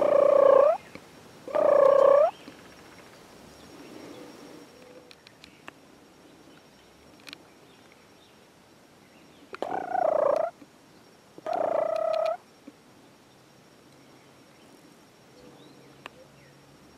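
Wild turkey gobbler gobbling four times, in two pairs: two gobbles about a second and a half apart at the start, and two more about ten seconds in.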